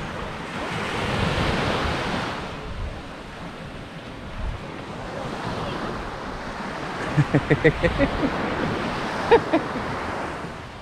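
Small waves breaking and washing up a sandy beach, with wind on the microphone; the surf swells loudest in the first two seconds, then eases. Short bits of distant voices come in near the end.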